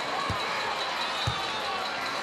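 A basketball dribbled slowly on a hardwood court, two bounces about a second apart, over steady arena crowd noise.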